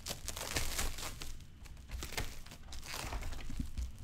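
Plastic crinkling and rustling close to the microphone, with many small clicks scattered throughout.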